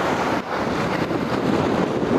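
Strong wind buffeting the microphone over sea waves washing against a rocky shore, a steady rushing noise that dips briefly about half a second in.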